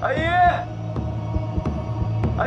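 A voice calling out a name, "A Yin", once in the first half second, over a steady low hum.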